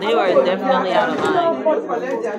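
Several people talking over one another at once, loudly, in a room.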